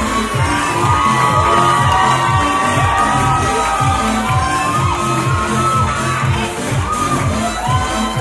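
Pop dance music with a steady bass beat, with an audience cheering and shouting over it.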